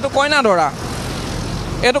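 Road traffic noise: a steady rush from vehicles on the road, heard for about a second between spoken words.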